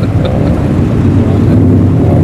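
Subaru Impreza's flat-four engine running at low speed through a loud aftermarket exhaust: a steady, deep rumble as the car rolls slowly past.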